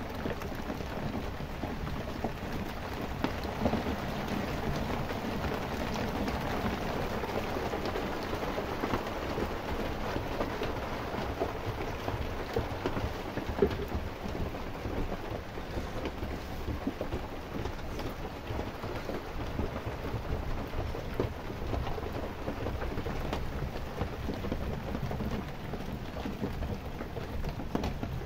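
Steady rain falling on wet ground, an even hiss with a low rumble underneath, and one sharp knock about halfway through.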